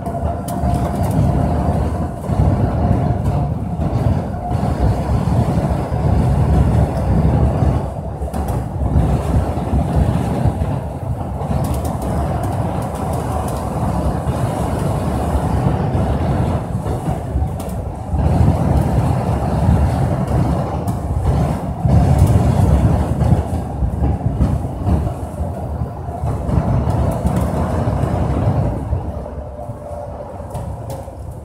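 Road noise inside a moving vehicle: a continuous low rumble from tyres and drivetrain that swells and eases as the vehicle drives along, with a faint steady whine in the first few seconds.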